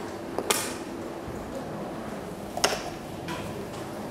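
Two sharp knocks about two seconds apart, with a few fainter ticks, over steady room noise: a handheld microphone being handled and set down.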